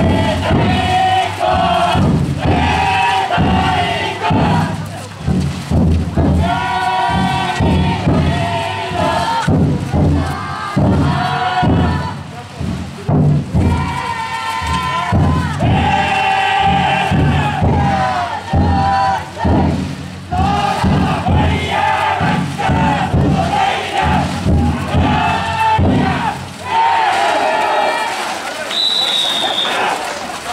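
Bearers of a futon daiko float chanting and shouting in unison, with low thuds running underneath. A brief high whistle-like tone sounds near the end.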